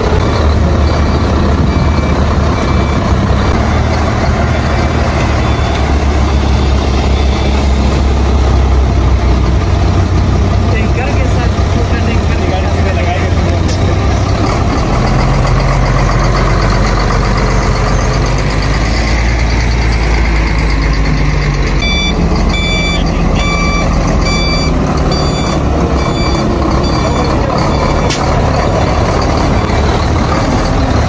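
Heavy truck's diesel engine running loudly and steadily, its note shifting about halfway through. From about two-thirds of the way in, a reversing alarm beeps repeatedly, roughly one beep every 0.7 seconds for several seconds.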